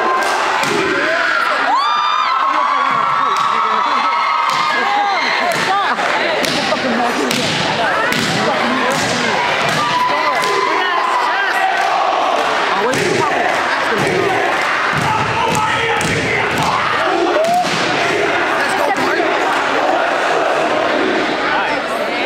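A troupe doing a Polynesian group war dance: many sharp hand-slaps and stomps in unison, with shouted calls, over a cheering, shouting crowd.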